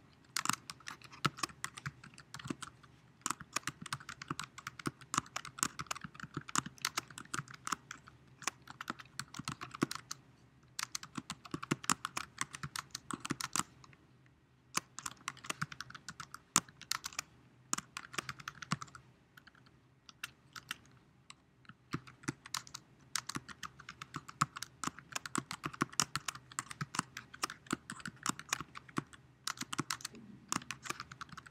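Typing on a computer keyboard: rapid key clicks in bursts, broken by short pauses about ten and fourteen seconds in and a longer pause around twenty seconds.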